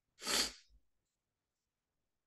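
A single short, breathy vocal burst from a man, about half a second long, like a stifled sneeze, followed by silence.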